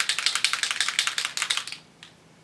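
Mixing balls rattling inside a Heidi Swapp Color Shine spray-mist bottle as it is shaken to spread the pigment and mica, a fast run of clicks that stops just before the end.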